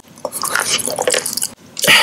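Close-miked wet mouth sounds of eating a square of Tirol chocolate: a quick run of small wet clicks and smacks, a brief pause, then a short loud burst of noise near the end.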